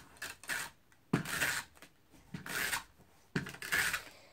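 Handheld tape runner drawn across paper in short scraping strokes, about five in all, roughly one a second.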